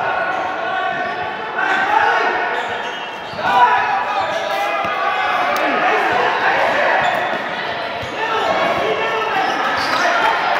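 Basketball being dribbled on a hard indoor court amid the running play of a game, with players, coaches and spectators calling out over one another throughout.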